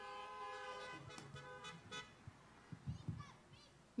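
A faint, steady two-note tone held for about two seconds, then fading, followed by faint low murmuring voices.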